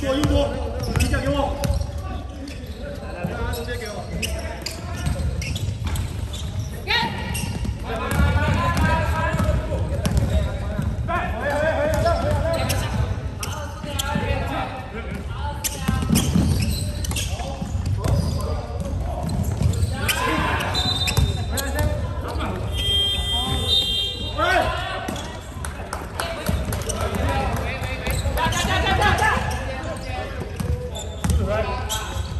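A basketball bouncing repeatedly on a hard sports-hall court, with players' voices calling out indistinctly during play. The hall's reverberation colours the sound, and a few brief high-pitched squeaks come about two-thirds of the way in.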